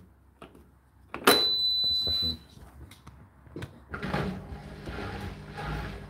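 Hotpoint NSWR843C washing machine giving one long, high beep about a second in as a programme is started. About four seconds in, the machine starts running with a steady mechanical noise and a low hum.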